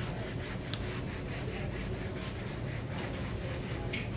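Felt eraser wiping marker off a whiteboard: a steady, soft rubbing with a few faint scuffs.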